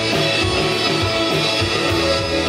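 Live rock band playing: electric guitars over a steady drum-kit beat, recorded on a phone from the audience.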